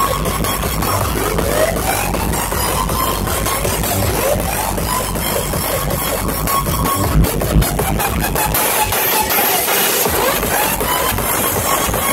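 Loud electronic dance music from a DJ set over a festival sound system, with rising synth sweeps. The deep bass drops out for a moment about nine seconds in, then comes back.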